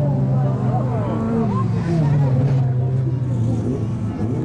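Autocross cars' engines running on the dirt track as a steady, loud drone, the pitch dropping about halfway through. Spectators' voices can be heard over it.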